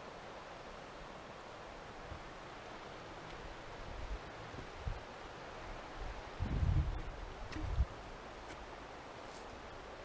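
Steady rush of a fast-flowing river running over rapids. A few low bumps of handling noise on the microphone come about six to eight seconds in as the camera swings round.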